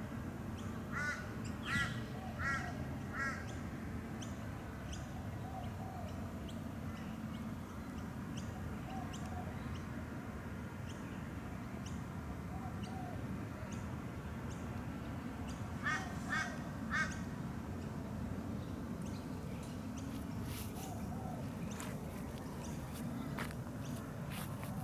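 Birds calling over a steady low background hiss: short harsh calls in a run of four near the start and three more about two-thirds of the way through, with softer, lower calls every few seconds between them.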